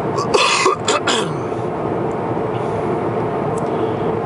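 A man clears his throat, a few short rough bursts about half a second in, over the steady hum of road and engine noise inside a moving car.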